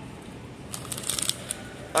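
Crinkling of a plastic popcorn bag as a hand grabs it off a shelf: a quick cluster of rustles about a second in, then a couple more near the end.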